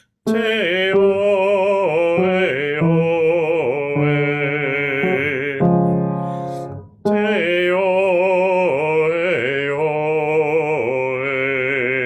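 A man's solo singing voice demonstrating a vowel-change warm-up vocalise, with the O vowels stretched and sung with vibrato. A note is held near the end of the first phrase, and after a short breath about seven seconds in he sings a second phrase.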